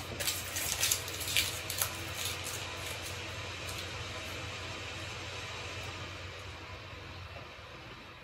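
A fan running with a steady rushing hiss and a low hum, winding down and dying away near the end. A few light clicks in the first two seconds.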